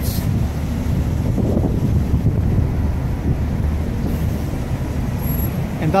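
Downtown street traffic: a steady low rumble of cars and a city bus moving through an intersection.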